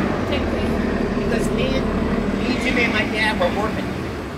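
A man's voice talking over a steady low engine rumble.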